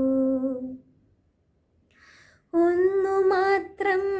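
A woman's solo voice singing a Malayalam poem as a slow melodic recitation, with no accompaniment. A held note fades out under a second in; after a short breath, the singing resumes on a higher note about two and a half seconds in.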